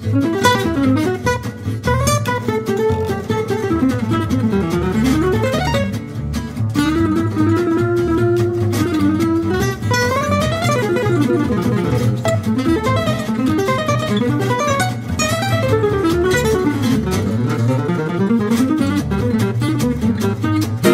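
Gypsy jazz trio playing: a lead acoustic guitar solos in fast single-note runs, with a long held note around the middle. Beneath it a second acoustic guitar chops rhythm chords and an upright double bass plays the bass line.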